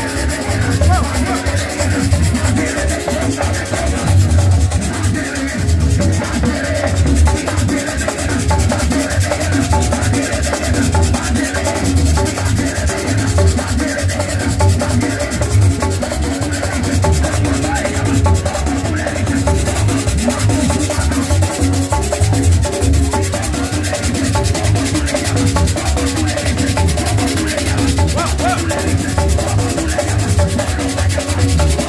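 Loud, lively worship-chorus music with heavy steady bass, pitched instruments or voices in the middle range, and a constant scraped percussion rhythm throughout.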